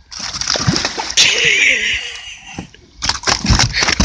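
Hooked bowfin thrashing and splashing at the water's surface beside a kayak. A long, loud bout of splashing starts about a second in, and a run of sharp, choppy splashes follows near the end.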